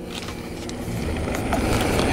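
A vehicle pulling up, its engine and tyre noise slowly growing louder.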